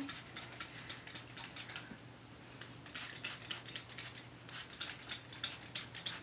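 Rapid, soft crackling and clicking handling noises in short runs as hands work through hair close to the microphone, over a faint steady low hum.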